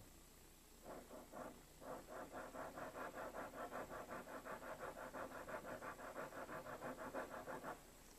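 Pen scribbling back and forth on paper, shading in a small sketch. A few strokes come about a second in, then a quick, even run of about five strokes a second that stops shortly before the end.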